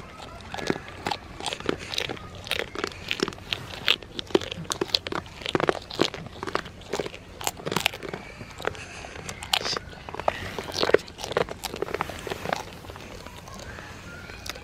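A goat biting and crunching a crisp treat fed from the hand, chewing close up with quick, irregular crunches, several a second.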